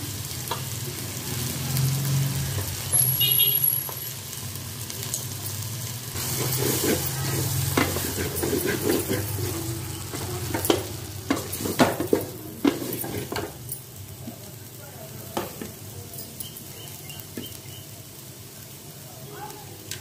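Drumstick pieces and vegetables sizzling in oil in an aluminium pot while being stirred and scraped with a wooden spatula. A run of sharp knocks of the spatula against the pot comes in the middle, as spice powder is stirred through.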